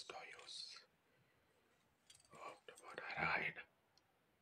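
A man speaking softly in a breathy whisper: one short phrase at the start, then a longer one a little past two seconds in.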